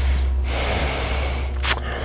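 A person drawing a long, audible breath, then a short sharp click near the end, over a steady low hum.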